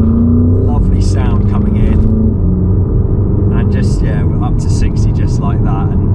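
Porsche Cayenne Turbo E-Hybrid's twin-turbo V8 accelerating at about half throttle in Sport Plus, heard from inside the cabin. Its pitch climbs and drops sharply twice in the first two and a half seconds as the gearbox shifts up, then holds steady.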